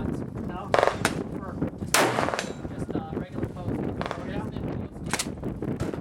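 12-gauge Ithaca Deerslayer III shotgun firing: a sharp report about three-quarters of a second in and a louder one with a ringing tail about two seconds in, then a fainter shot near the end.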